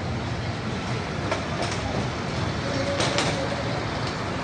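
Steady rumble of highway traffic with heavy vehicles passing, broken by a few short clicks or knocks, the loudest about three seconds in.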